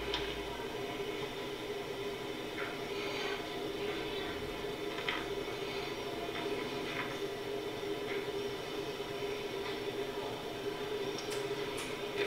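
Steady low hum with room noise, played back through a TV's speaker, with a few faint soft rustles and taps of hands handling the snake and syringe.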